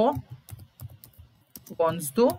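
Typing on a computer keyboard: a steady run of quick keystrokes, several a second.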